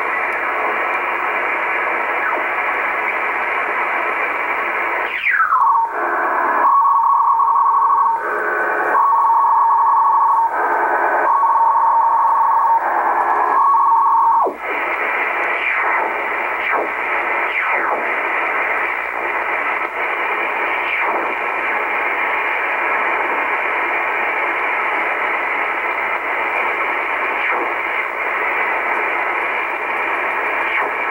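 Icom IC-R8500 communications receiver tuned in upper sideband across the 13 MHz utility signals, giving steady static hiss. About five seconds in, a whistle falls in pitch as it tunes onto a utility signal: steady tones near 1 kHz that switch back and forth for about ten seconds, then cut off suddenly. The hiss then returns, with faint brief whistles as tuning goes on.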